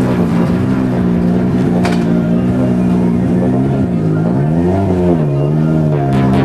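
A Ford Focus RS WRC rally car's turbocharged four-cylinder engine idles steadily. A little after four seconds its revs dip and then rise again. A single sharp click comes about two seconds in.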